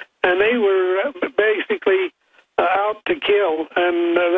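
A man speaking over a telephone line, the voice narrow and cut off at the top, with short pauses between phrases.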